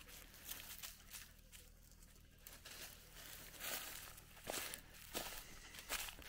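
Faint footsteps crunching on dry leaf litter and dry grass, a few soft steps that come more often in the second half.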